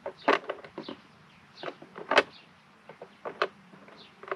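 Plastic egg-turner rollers and the clear plastic incubator tray clicking and rattling as the rollers are pressed into place: a handful of short sharp clicks, the loudest a little past two seconds in.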